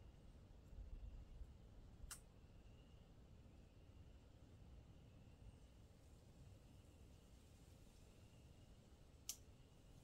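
Near silence with a faint low rumble, broken by two sharp single clicks about seven seconds apart: the Yamaha Raptor 700R's handlebar headlight switch being flipped between low and high beam.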